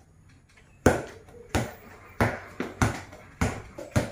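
A handball being dribbled on a tiled floor: sharp bounces a little under two a second, beginning about a second in.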